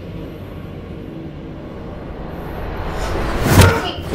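Low, steady background music, then a rising rush near the end that breaks into a loud thump as two men grab each other in a scuffle.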